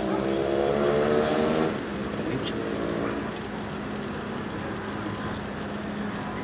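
A man's voice speaks briefly, then a steady low mechanical hum with one constant tone carries on under the scene.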